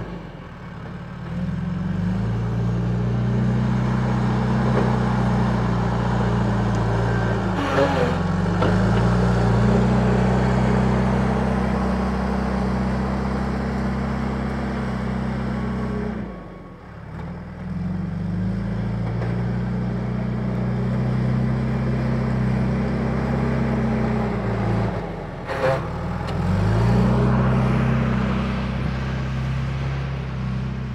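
Backhoe loader's diesel engine working under load as it pushes and levels dirt. Its engine speed sags and climbs back up about every eight seconds, and there is a short clank at two of the sags.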